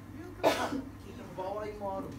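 A single loud cough about half a second in, followed by a brief stretch of voice near the end.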